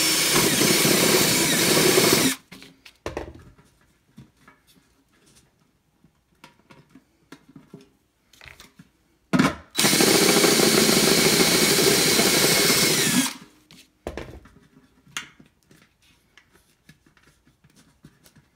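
Power drill turning a step bit through the thin metal lid of a paint can, boring a hole. It runs until about two seconds in, stops, then after a brief blip runs again from about ten to thirteen seconds, with faint clicks and handling between the two runs.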